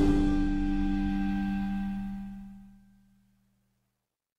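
Intro logo sound: a low, ringing musical chord that dies away over about three seconds.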